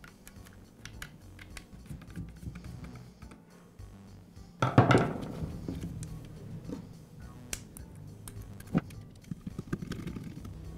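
Small clicks and taps of plastic motor-brush caps and springs being pressed and screwed back into a DeWALT drill's housing, with one louder brief sound about halfway through. Soft background music runs underneath.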